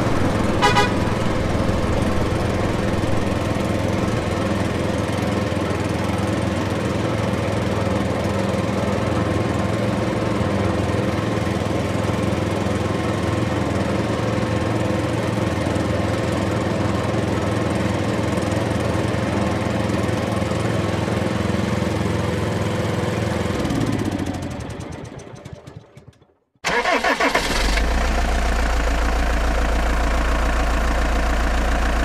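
A steady motor-vehicle engine sound effect runs evenly, then fades out to silence about 24 to 26 seconds in. A deeper idling engine sound cuts in abruptly just after and runs on steadily.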